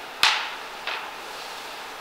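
A single sharp knock about a quarter second in, then a fainter click near the one-second mark, over a steady background hiss.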